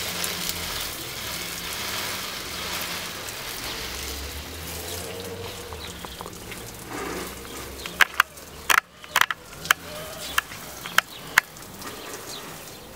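Garden hose spray nozzle hissing as the spray hits plants, fading over the first half. Several sharp clicks and taps come in the last few seconds.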